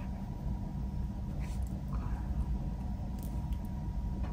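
A steady low rumble runs throughout, with a few faint clicks and rustles from a cord wrist strap being threaded through a small plastic camera cover.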